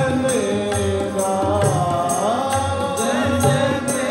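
Sikh kirtan: a male voice sings a devotional hymn with sliding, ornamented phrases over the sustained reeds of harmoniums, with a steady tabla beat underneath.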